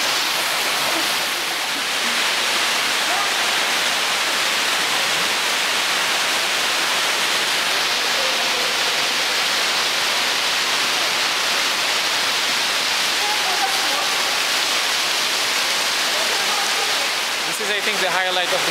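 Steady rush of flowing water, even and unbroken, with faint voices now and then.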